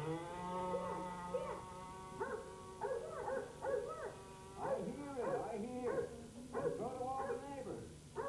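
Recorded dog barking and whimpering, a string of short rising-and-falling calls after a long held tone, played over a show's sound system.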